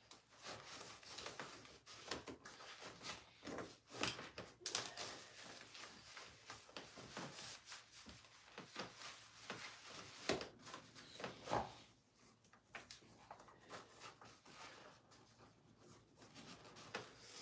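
Faint, scattered rustling and small knocks of things being handled and moved about while someone rummages through belongings on the floor.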